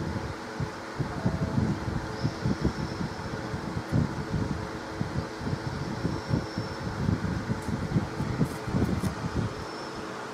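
Steady fan-like whir with a low, uneven rumble and a faint steady hum.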